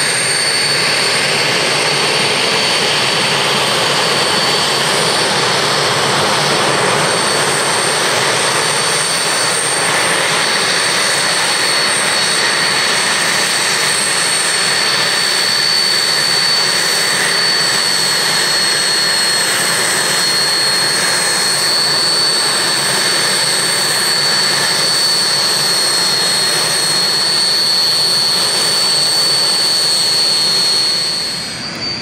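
The twin General Electric CJ610 turbojets of a Messerschmitt Me 262 replica run steadily on the ground. A constant high whistling whine sits over a loud, even hiss of jet noise.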